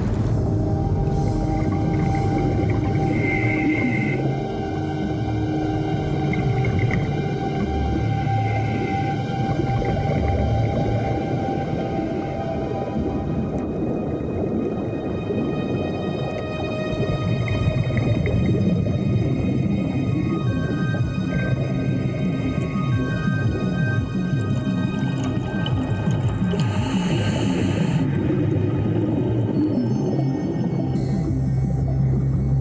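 Tense film-score music of sustained, droning tones with no clear beat.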